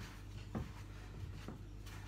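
Fingers rubbing and working sticky flour-and-water pastry dough in a bowl: faint soft rubbing with two light knocks, about half a second and a second and a half in.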